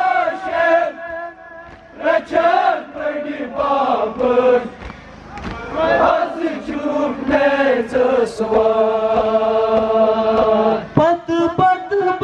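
A young man chanting a Kashmiri noha, a Shia lament for Imam Hussain, into a handheld microphone: one male voice singing slow melodic phrases, the later ones held long.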